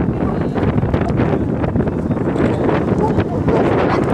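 Wind buffeting the camera's microphone, a steady loud rumble.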